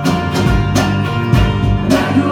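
A live band playing, with acoustic guitar and bass guitar over a steady beat of a little under two strokes a second.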